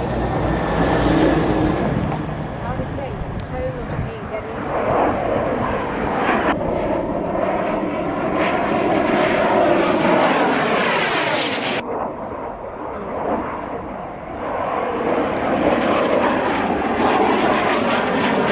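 Jet fighter's turbojet engine running loud during a display flypast, with a swishing sound that sweeps up and down in pitch as the aircraft passes and turns overhead. The sound changes abruptly twice, about six and twelve seconds in.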